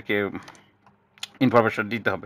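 A few light computer keyboard key clicks in a short pause between bursts of a man's speech.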